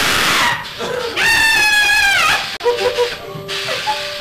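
A sudden loud blast of hissing air, typical of a haunted-attraction air-blast effect, followed by a high-pitched scream held for about a second that drops in pitch as it ends.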